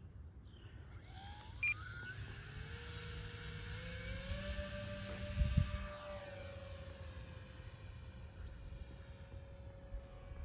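Electric RC model airplane motor whining up in pitch as it throttles up for a takeoff from snow, then holding a steady pitch as the plane climbs away. Underneath is a low rumble, and there is one brief thump about five and a half seconds in.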